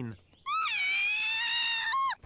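A cartoon character's voice giving one long, high-pitched squeal, starting about half a second in, dipping slightly at first and then held steady.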